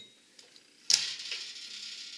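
Stainless exhaust-port fitting being disconnected from a yeast brink under a conical fermenter: a sharp metallic click about a second in, followed by a steady hiss.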